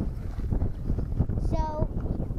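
Wind buffeting the camera microphone in a ragged, low rumble, with a brief high-pitched voice call about one and a half seconds in.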